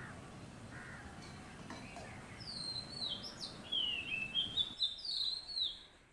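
Oriental magpie-robin singing: a quick run of loud, clear whistled notes, many sliding down in pitch, beginning about halfway through over faint background hiss.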